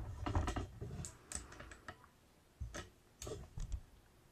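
A run of light, irregular clicks and taps with short gaps between them, like small objects or a handheld camera being handled.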